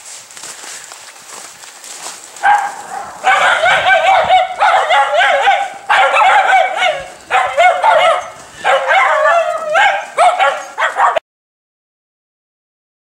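Schnauzer whining and yipping in a run of loud, wavering, high-pitched calls that rise and fall in pitch, each stretch lasting about a second. The sound stops abruptly near the end.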